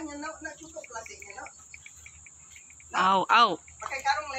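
Faint, quick insect chirping, most plainly in the middle, under low voices early on. A short, loud burst of voice comes about three seconds in.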